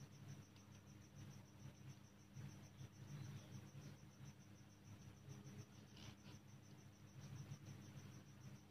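Near silence: a low steady hum, with a faint high chirp repeating several times a second and soft scratches of a ballpoint pen writing on paper.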